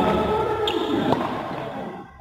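Badminton rally sounds: two short sharp sounds, a little under a second in and just after a second in, from shoes squeaking on the court floor and a racket striking the shuttlecock, over background voices.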